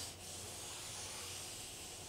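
Pencil rubbing across drawing paper on an easel pad in a continuous, steady stroke as a curved form is drawn.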